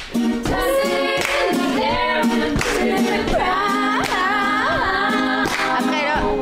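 A woman singing a song unaccompanied, in long held notes, with hand claps along with the singing.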